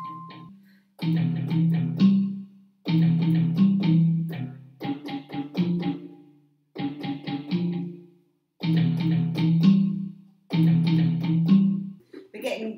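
Digital keyboard playing a plucked-note voice over a low bass line, in about six short repeated phrases with brief pauses between them, as a sound is tried out.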